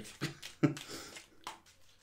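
A deck of oracle cards being shuffled by hand: soft slaps and clicks of the cards at uneven intervals. A short breathy voice sound comes near the start.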